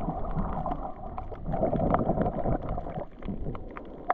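Muffled underwater water noise, picked up by a camera held underwater, surging louder in the middle and easing off near the end, with many scattered short clicks throughout.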